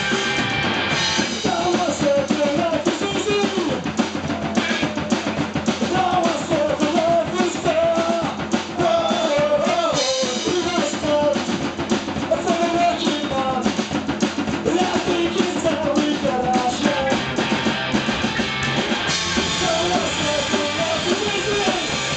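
Punk rock band playing live: distorted electric guitar over a fast, driving drum kit, loud and without a break, with a wavering melodic line running through the middle.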